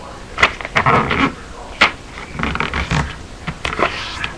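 A sheet of paper being handled and folded in half close to the microphone: rustling, with several sharp crackles.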